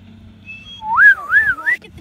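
Someone whistling a wavering note that swoops up and down about three times and climbs at the end, lasting about a second. A low steady hum runs underneath.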